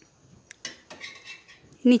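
A metal spatula clicking and scraping against an iron tawa as toasted bread rounds are turned over: a few short clicks in the first second, then light scraping.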